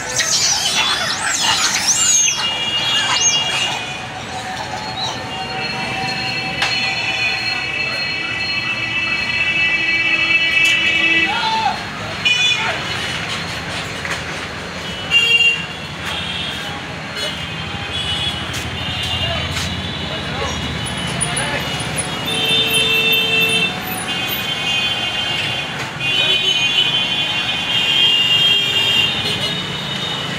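Monkeys screeching in a chase for the first few seconds. Then long stretches of high, steady beeping tones over a constant background of outdoor noise.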